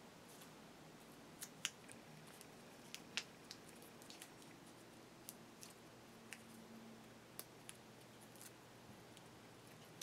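Near silence with scattered faint clicks and ticks from fingers handling a small servo and masking tape, a couple of them sharper about a second and a half and three seconds in.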